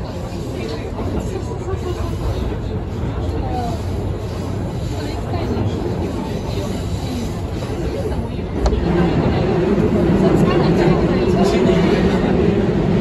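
Electric commuter train running along the track, heard from inside the front of the train. About nine seconds in it enters a tunnel and the running noise suddenly gets louder, with a steady hum.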